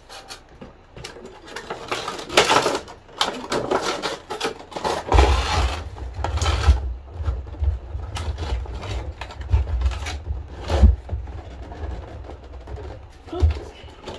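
Packaging being handled: a clear plastic tray and a cardboard box crinkling and rustling, with irregular clicks and knocks. From about five seconds in, a low rumble of handling noise sits underneath.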